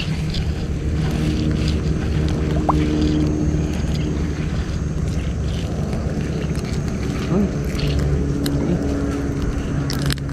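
A small motor running steadily, a low even drone.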